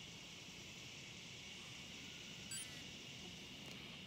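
Faint outdoor ambience: a steady high insect drone, with one brief high-pitched blip about two and a half seconds in.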